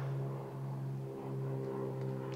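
A steady low mechanical hum with several overtones, from a motor or engine running at an even speed.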